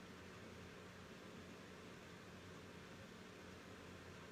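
Near silence: faint, steady room tone with a low hum.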